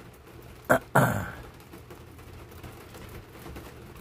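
Two short, sharp noises from a person close to the microphone about a second in, the second trailing off, over a faint steady background.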